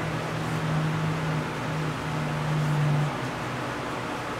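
Steady background hiss with a low, even hum that stops about three seconds in.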